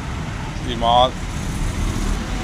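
A man says one short word, "Shri", over a steady low rumble of road traffic.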